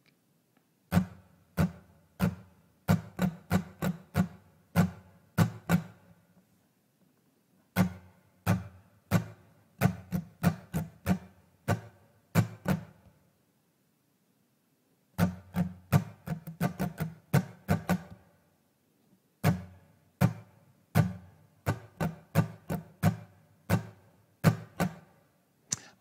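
Steel-string acoustic guitar strummed with a pick in the pop-rock strumming pattern, taken apart in four phrases of crisp down and up strokes, about two to three a second, with pauses of a second or two between the phrases.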